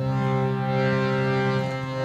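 A drone instrument holding a steady chord of several notes with rich overtones, giving a continuous sound; one of the lower notes changes near the end.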